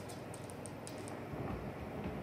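A run of light high ticks as flour is sprinkled by hand over dough. About halfway through, these give way to soft low thuds of hands pressing and patting the stuffed dough against a marble board.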